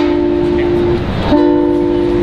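A young girl singing over instrumental backing, holding two long notes of about a second each with a short break between them.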